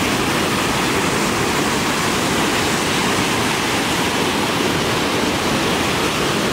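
Fast-flowing water rushing and churning into white water through a concrete dam canal, a steady, unbroken rush.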